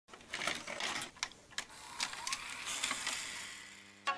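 Electronic static-and-glitch intro sound effect: a crackling hiss broken by several sharp clicks, with a short rising tone about two seconds in, fading out near the end.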